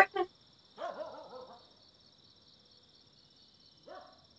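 A woman's short, soft laugh about a second in, then near quiet with a faint steady high-pitched hiss.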